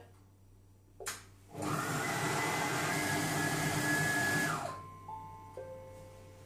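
Monsieur Cuisine Connect kitchen robot's motor running at speed 5, blending a wet cake batter in its steel bowl: a click, then a loud steady whirr for about three seconds that winds down near the end.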